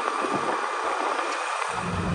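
Steady noise of a moving scooter: a smooth, even rush of wind and road, with a faint steady whine underneath.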